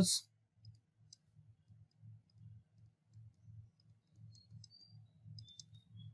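Faint, scattered clicks with soft low taps from handwriting being entered on a computer screen, with a small cluster of ticks near the end.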